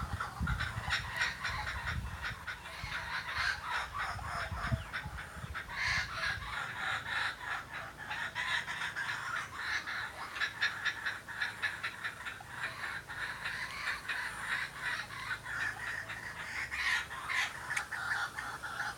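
Laughing kookaburras calling together in a long chorus of rapid, repeated cackling notes: the adults are teaching their young to laugh.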